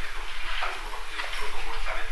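A man speaking, with a steady low electrical hum underneath.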